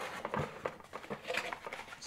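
Cardboard packaging being handled: a box insert and flaps lifted and pulled apart, with scattered light scrapes and taps.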